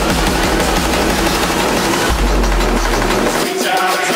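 Dark electronic dance music from a DJ mix, dense with rapid drum hits. A deep held bass note comes in about halfway and drops out shortly before the end.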